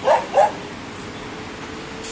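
A dog barks twice in quick succession, about a third of a second apart, right at the start.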